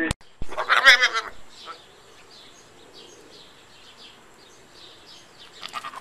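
A goat bleating: one short quavering call about a second in, and another starting right at the end. Small birds chirp faintly in between.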